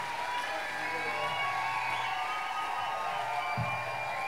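Audience cheering and applauding, with music underneath.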